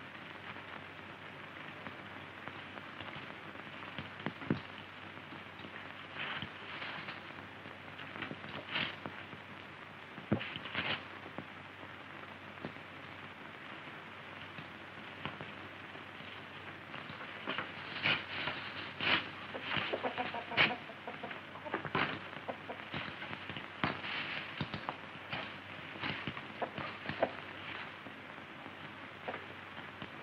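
Chickens clucking, with scattered short knocks and rustles that grow busier in the second half, over a steady background hiss.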